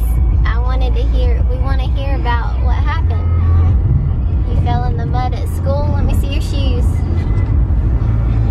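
Steady low rumble inside a car's cabin, with untranscribed talking over it in two stretches.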